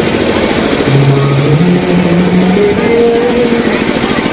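Fast, continuous drumming with voices holding long, loud notes over it.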